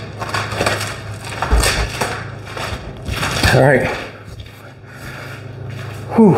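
Rustling and handling noises in repeated short rushes over a steady low hum, with a brief voice sound about three and a half seconds in.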